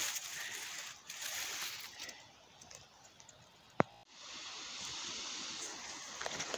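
Soft, even rustling of grass and leaf litter as porcini mushrooms are handled and gathered by hand, with a single sharp click about four seconds in.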